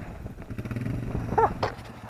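Quad (ATV) engine idling steadily, with a brief voice sound about one and a half seconds in.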